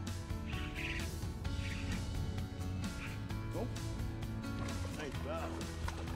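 Background music with steady held notes over a low bass line, at an even level.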